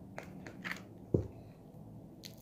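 Green foam-bead slime being handled as it comes out of its tub, giving three short, faint crunching crackles, the last and loudest a little past a second in.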